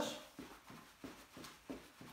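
Footfalls of a person jogging in place while wearing ankle weights: faint, regular thuds, about three a second.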